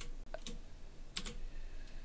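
A few separate keystrokes on a computer keyboard as code is typed.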